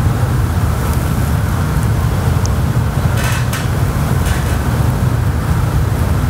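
A steady low hum with a hiss over it, the constant background noise of the room, with a few faint ticks a little after three seconds in.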